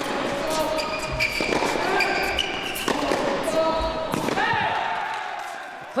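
Indoor tennis match sound: sharp racket hits and ball bounces on the hard court, over shouts and cheering from spectators.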